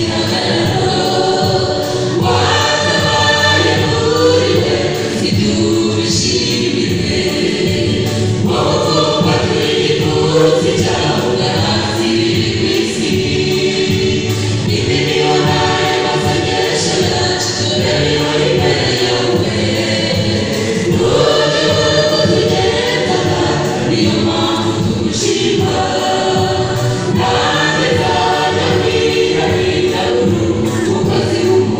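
Mixed choir of women and men singing a gospel song together, several voices through handheld microphones.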